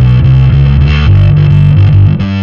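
Fender Precision Bass playing a riff over a G chord: a loud, steady run of quick low plucked notes.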